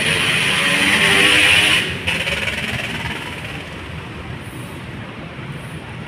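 Bus engines running in the terminal, a loud steady running noise that drops suddenly about two seconds in and then fades to a lower steady level.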